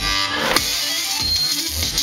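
Live band playing a song with electric guitar over a steady, bass-heavy beat. The beat breaks off briefly near the start and comes back in with a sharp hit about half a second in.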